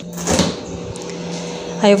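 Glass door of a small beverage cooler pulled open, a brief rustling clunk about half a second in, over a steady low hum.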